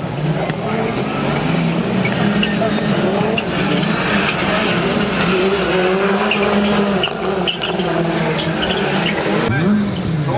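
Rallycross cars racing on the circuit, their engines revving up and down through gear changes. Near the end one car passes close, its engine pitch rising and then dropping away.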